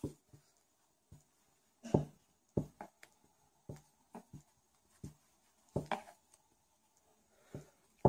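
Faint, short scratches and ticks of a 1.75 mm metal crochet hook pulling cotton yarn through single crochet stitches, a separate small sound every second or so.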